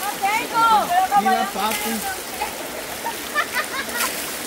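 Shallow river water running steadily, with a few brief splashes from people wading in it. Women talk over it in the first half.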